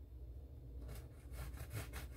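A knife sawing at the crust of a freshly baked white loaf: faint, rapid scratchy strokes that start about a second in.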